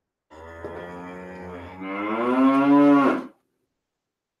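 One long cow moo that grows louder and rises slightly in pitch about halfway through, then stops abruptly.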